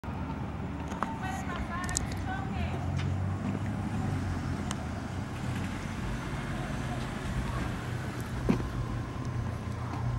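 Night street ambience: a steady low hum of car traffic, with faint distant voices in the first few seconds and a few sharp clicks.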